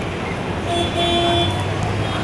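Steady background noise with a low hum, and a horn-like tone held for about a second, starting under a second in.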